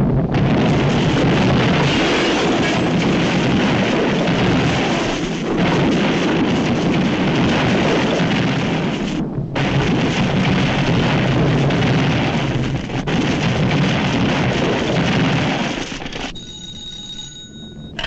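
Continuous rumble and crashes of cartoon explosion effects for a comet smashing into a city, mixed with orchestral score. Near the end this gives way to a telephone bell ringing.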